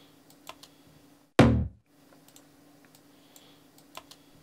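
Scattered light computer mouse and keyboard clicks, and about a second and a half in a single short, loud synth chord stab through a short reverb, cut off after less than half a second.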